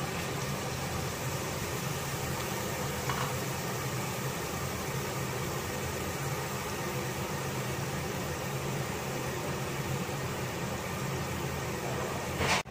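Steady fan hum with an even hiss, like a kitchen appliance's cooling or extractor fan running, holding at one level throughout.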